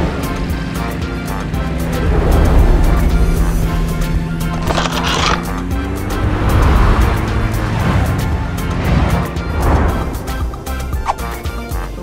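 Cartoon background music with steady held bass notes, and two whooshing sound effects about five and ten seconds in as the animated propeller plane flies.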